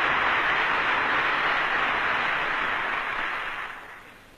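Audience applauding, a steady crackling wash of clapping that dies away near the end, heard through a narrow-band 1960 archival recording.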